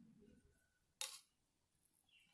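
A single sharp metallic click about a second in, metal knitting needles knocking together, otherwise near silence.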